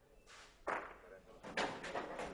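Bocce volo shot: the thrown ball strikes with a sharp clack about two-thirds of a second in, followed by several smaller knocks of balls scattering on the hard court. The hit is valid.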